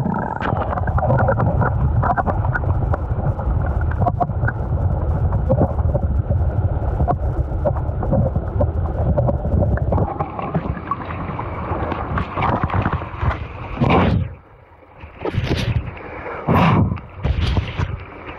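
Muffled low rumble of moving pond water heard through a camera microphone held underwater. Near the end come a few short splashes as the camera breaks the surface.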